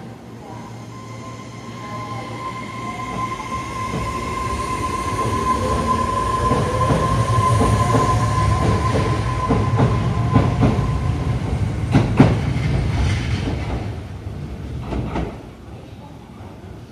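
Electric subway train pulling out of the platform: its traction motors whine, rising in pitch as it gathers speed, and the wheels click over rail joints in a quickening run. One sharp, loud clack comes about twelve seconds in, and the sound falls away near the end.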